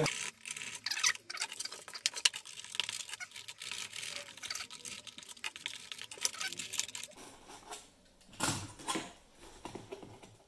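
Snap-off craft knife cutting and tearing through a foam terrain tile, a rapid, irregular scratchy crackling as the blade works out chasm slits, with a louder burst about eight and a half seconds in.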